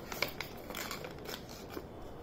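Faint crinkling and crackling of a sheet of A4 paper being folded by hand, with a few small, scattered crackles.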